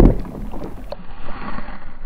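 Water sloshing and rushing heard through a submerged action camera's waterproof housing, with a knock at the very start. About a second in, the sound turns duller and more muffled.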